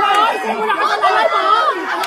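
Several people talking at once, their voices overlapping in chatter.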